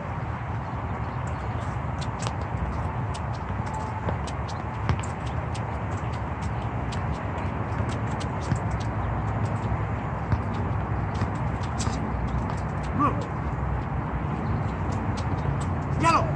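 Irregular light taps of a soccer ball being dribbled and touched on a hard court surface, mixed with shoe footsteps, over a steady low background rumble.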